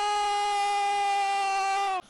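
A male football commentator's voice holding one long, high shouted note. It stays level, sags slightly near the end and cuts off abruptly.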